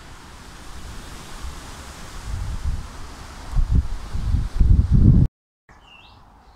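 Wind buffeting a clip-on microphone with rustling leaves, the low rumbling gusts growing stronger in the second half. The sound cuts off suddenly near the end, then faint bird chirps come in over quieter background.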